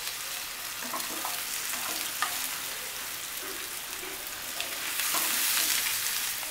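Potato and raw banana wedges frying in hot oil in a nonstick pan: a steady sizzle, with a wooden spatula stirring them and a few short ticks against the pan. The sizzle grows louder near the end as the pieces are turned.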